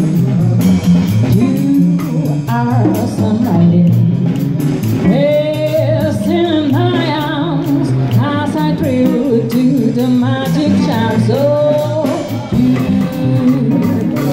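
Live music: a woman sings into a microphone over guitar accompaniment, holding some long notes with vibrato.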